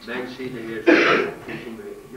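A man talking, broken about a second in by one loud, short throat-clearing.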